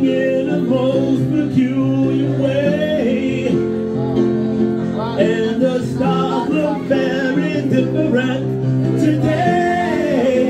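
A man singing live into a microphone over instrumental accompaniment with held chords, a song performed in a small club.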